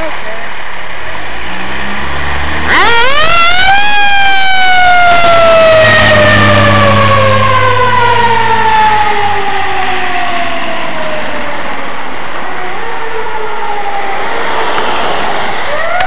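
Fire engine siren on a call, over the truck's engine rumble: about three seconds in the siren rises quickly to a high pitch, then slowly winds down over the rest of the time as the truck pulls away.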